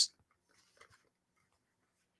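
A nearly silent room, with the last trace of a word at the very start and a few faint small clicks and rustles about half a second to a second in.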